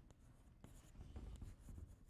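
Chalk writing on a blackboard: faint, scattered scratching and tapping strokes.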